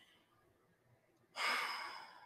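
A woman's single breathy sigh, starting suddenly about a second and a half in and fading away over about a second.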